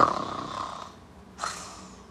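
A woman imitating a person snoring: a rough, noisy snore that fades over about a second, then a shorter breathy hiss about a second and a half in.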